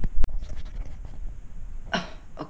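A man's short cough, with a sharp click about a quarter of a second in; his voice starts again at the very end.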